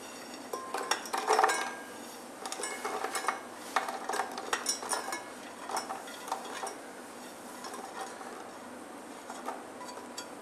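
Irregular light clinks and clatter of toasted nuts being tipped off a plate into a plastic grinder jar.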